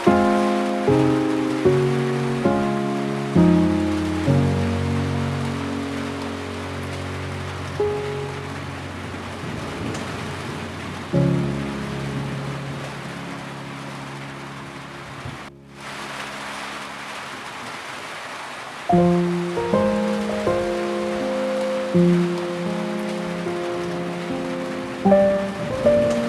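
Calm, slow piano music over steady soft rain. The notes are struck in short phrases and left to ring, with a long held chord in the first half and sparser notes before the phrases pick up again near the end. The sound drops out briefly about halfway through.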